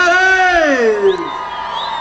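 A man's long drawn-out shout through the concert PA, rising and then sliding down in pitch over about a second and a half, followed by a high whistle and cheering from the crowd.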